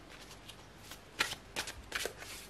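Tarot cards being shuffled and handled by hand: soft riffling at first, then three short sharp card snaps in the second half.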